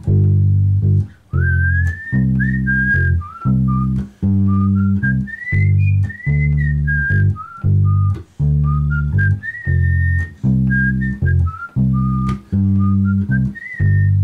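Electric bass guitar playing the solo's chord progression in G, a steady run of notes with short gaps between them. Above it, from about a second in, a high, pure whistle-like melody line slides and steps between pitches.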